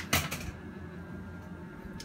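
Small Boshje clip fan running steadily, a low motor hum with faint thin whining tones. A brief burst of clicks and rustling comes near the start.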